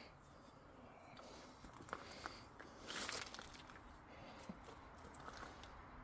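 Faint footsteps and rustling over loose rocks, with a few light knocks and a brief louder rustle about three seconds in.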